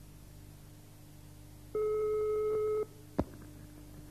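Telephone ringback tone heard over the line: one steady tone about a second long, then a sharp click about three seconds in as the call is answered, over a faint steady line hum.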